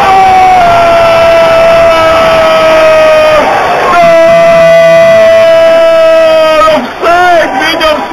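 A man shouting two long held calls, each about three seconds and sagging slightly in pitch, then a few shorter wavering shouts near the end, over a cheering football crowd.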